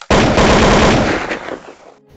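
Loud glitch sound effect on an intro logo: a sudden burst of dense, rapid crackling noise that fades away over about a second and a half.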